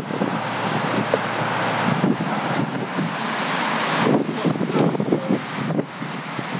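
Strong wind buffeting the microphone: a loud, gusty rush and rumble that swells and dips, with its strongest gust about four seconds in.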